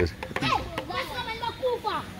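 Young children's voices talking and calling out, high and wavering in pitch.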